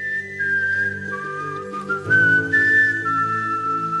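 Instrumental background music: a high, pure-toned melody moving in held notes, stepping down and back up, over sustained low accompanying notes that grow fuller about halfway through.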